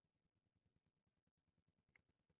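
Near silence: the sound track drops to almost nothing between spoken phrases.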